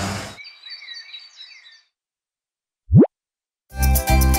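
A cartoon sound effect: one short pop that slides quickly upward in pitch, about three seconds in, after faint bird chirping. Background music starts just before the end.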